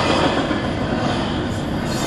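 Double-stack container freight train rolling past close by, its cars' wheels running steadily on the rails, heard from inside a car's cabin.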